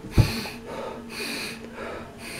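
A man breathing audibly, two breaths of about half a second each, as he shows the breath control used to hold a rifle steady for the shot. A dull thump comes about a quarter second in.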